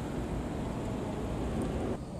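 Toyota Crown patrol car rolling past at low speed: a steady rush of engine and tyre noise, with wind rumbling on the microphone.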